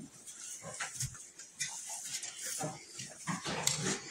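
Goats eating hay: faint, scattered rustling of hay and chewing, with a few small animal noises.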